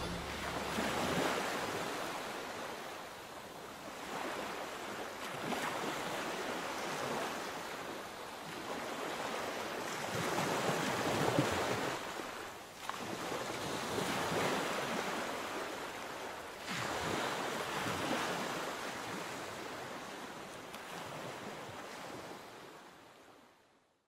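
Ocean surf washing onto a sandy beach, the rush of the waves swelling and ebbing every few seconds, fading out near the end.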